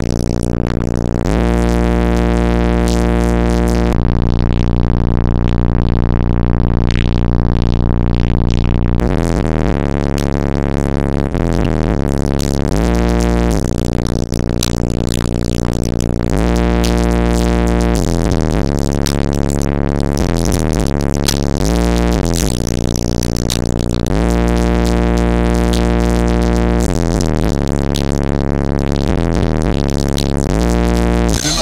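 Bass-heavy electronic music played loud through a car stereo with a single 15-inch DC Audio XL subwoofer on about 2,000 watts, heard inside the car. Deep bass notes held for a second or more at a time, one held for about five seconds, with gliding bass notes between them.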